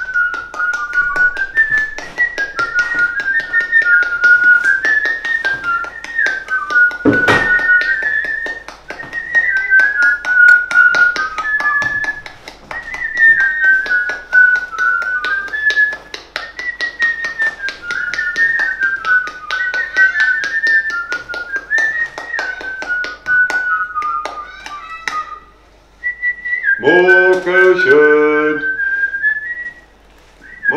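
A person whistling a wandering tune over rapid clicking and tapping, with one sharp knock about seven seconds in. Near the end a lower, voice-like sound joins the whistling.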